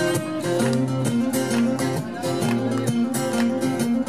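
Two acoustic guitars played together live, strummed in a steady rhythm with the notes changing as the chords move.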